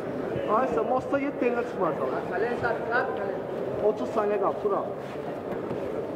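Indistinct men's voices calling out in an arena, over a steady crowd hum.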